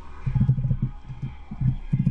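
Computer keyboard typing, heard as an irregular run of dull low thumps, a few per second.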